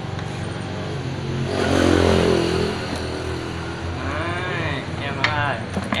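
A motor vehicle passes by, its noise swelling to a peak about two seconds in and then fading, over a steady low hum.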